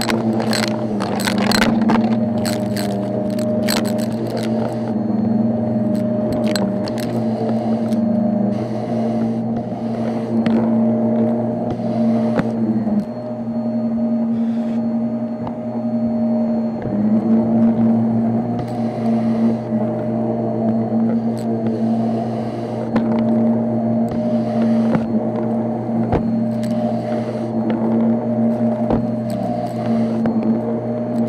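Shark upright vacuum cleaner running steadily with a loud motor hum. In the first few seconds crunchy debris rattles and crackles as it is sucked up, then the hum goes on with repeated swishing passes over carpet and a brief change in the motor's pitch about midway.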